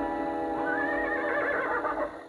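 A horse whinnies, one long wavering call starting about half a second in, over background film music that cuts off at the end.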